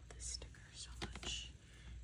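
Faint whispering, a few soft hissy breaths of words, over a low steady room hum.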